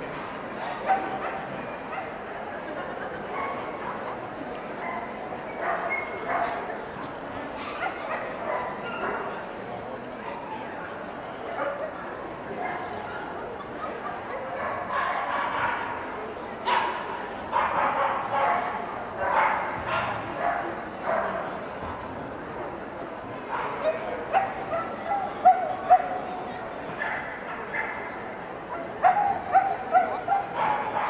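Dogs barking and yipping over the steady chatter of a crowd, with a few sharper barks near the end.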